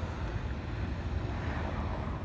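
Steady low rumble of outdoor city background noise, with no distinct events.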